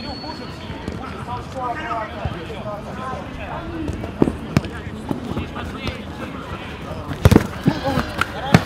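A football being kicked on an artificial-turf pitch: a few sharp thuds, the loudest a quick double thud about seven seconds in, under distant players' shouts.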